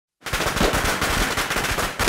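A string of firecrackers going off in a fast, dense crackle, starting a moment in.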